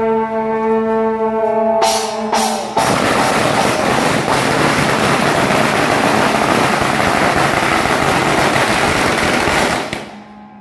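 Long brass processional horns sound one sustained note. About two seconds in come two sharp cracks, and then a string of firecrackers goes off in a dense, loud crackle that covers the horns and stops abruptly at the end.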